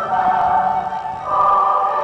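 Choir singing long held chords, moving to a new chord a little past halfway.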